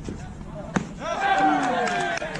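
A single sharp crack of a baseball pitch being met about three-quarters of a second in, followed by loud voices calling out on the field.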